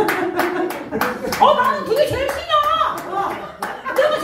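Hand claps, sharp and uneven at about three or four a second, with a voice talking over them.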